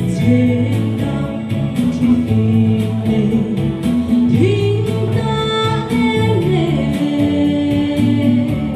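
A woman singing a song into a microphone over amplified backing music with a steady beat, holding one long note around the middle that slides down at its end.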